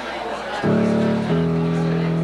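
A musical instrument starts playing held chords about half a second in and moves to a new chord a little later, over background chatter.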